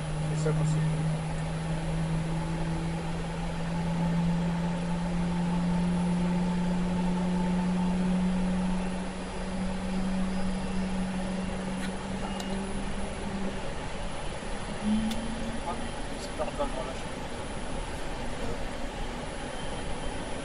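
GE90-115B turbofan on a Boeing 777-300ER spooling up during its start, heard from inside the cockpit as a steady hum that rises slowly in pitch and fades out about thirteen seconds in, over a constant background rush.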